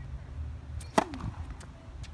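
Tennis racket striking the ball on a serve: one sharp pop about a second in.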